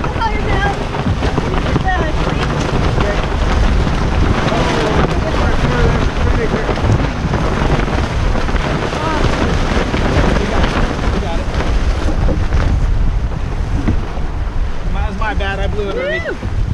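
Strong wind buffeting the microphone over water rushing past a racing sailboat's hull, with the spinnaker's sailcloth rustling and flapping as it is hauled down during a douse.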